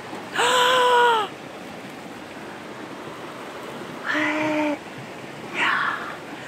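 A woman's short wordless vocal sounds: a higher-pitched one about half a second in, a lower one about four seconds in, and a faint third near the end. Under them, the steady rush of a stream.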